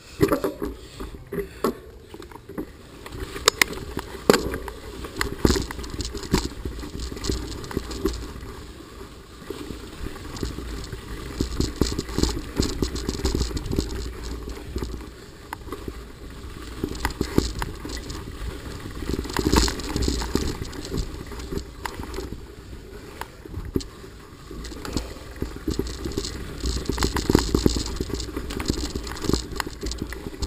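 Mountain bike ridden fast down a dirt forest trail: tyres crunching over the ground and the bike rattling and knocking irregularly over bumps, with wind rumbling on the camera's microphone.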